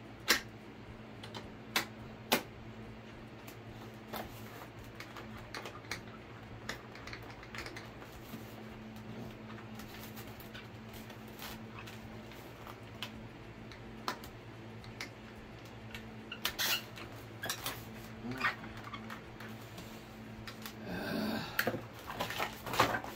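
Scattered sharp clicks and taps from a screwdriver and screw being worked into the tail of a foam RC plane, over a steady low hum. The screw is not catching its threads easily. A few loud clicks come in the first seconds and a quicker run of them about two-thirds of the way in, with handling rustle near the end.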